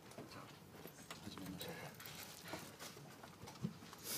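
Quiet room tone of a seated audience: scattered faint clicks and rustles, with low murmuring voices.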